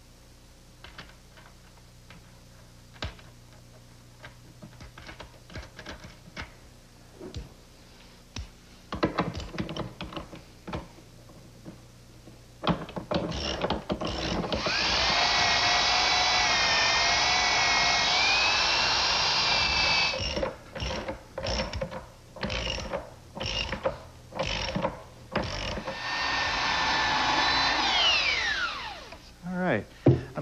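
Light clicks and taps of hand tools for about the first twelve seconds. Then a portable belt sander starts with a rising whine and runs loud, sanding down glued-in birch plugs flush with the cabinet side. It runs in uneven bursts for a few seconds, runs steadily again, and winds down with a falling whine near the end.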